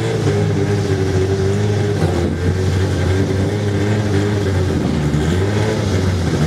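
Two drag-racing cars, one a Honda Civic, running at the start line while they stage. The engines give a steady, loud drone whose pitch wavers slightly.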